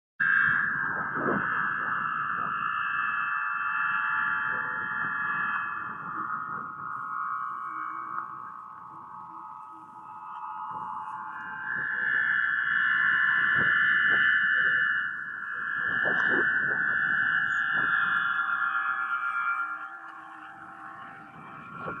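Wind-blown gourd aeolian harp and gourd wind organs sounding together in strong wind: overlapping sustained whistling tones that swell and fade with the gusts, loudest at the start and again in the middle. Wind buffets the microphone underneath.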